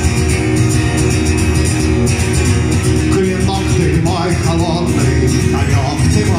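Steel-string acoustic guitar strummed steadily in a live song accompaniment. A man's singing voice comes in over it in the second half.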